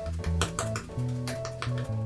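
Background music with a bass line and plucked notes, over which a makeup sponge taps sharply and irregularly, patting makeup onto the face.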